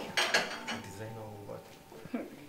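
A few light, sharp clinks and clicks in the first part, the two loudest close together near the start, then quieter.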